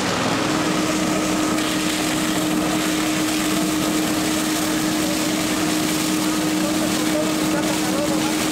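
Fire engine's motor and pump running steadily, a constant low hum under an even hiss of water jetting from a fire hose.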